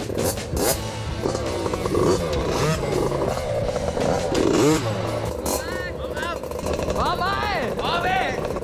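Two 50cc mini dirt bike engines running, their revs rising and falling again and again as the throttles are blipped, more often near the end.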